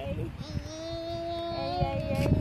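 A toddler singing a wordless, drawn-out 'yay': one long held note, then a slightly higher note near the end.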